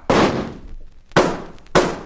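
Three gunshot sound effects: one at the start with a long ringing tail, then two more shots about half a second apart in the second half.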